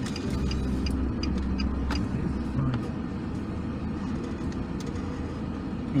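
Car engine and road noise heard from inside the cabin while driving: a steady low rumble, heavier in the first couple of seconds, with a few faint clicks.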